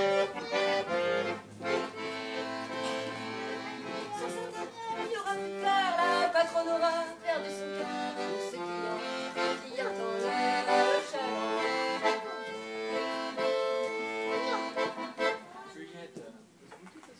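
Accordion playing a tune of melody and chords, the notes changing in steady sequence; the playing ends near the close.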